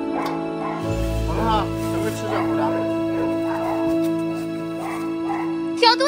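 Background music with sustained notes. Over it, a dog whines and yips several times, short rising-and-falling cries.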